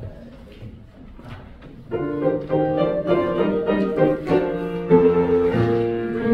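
Piano playing a short cadence of chords that sets the key for the choir. It is soft at first and becomes fuller with sustained chords from about two seconds in.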